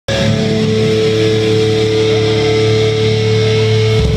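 Loud live heavy band in a club, electric guitars holding a sustained distorted chord, heard from within the crowd.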